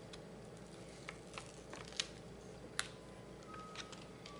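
Faint, sparse ticks and crackles of paper handling: the release liner being peeled off heavy-duty double-sided tape stuck to a cardstock panel, about half a dozen light clicks over a low room hum.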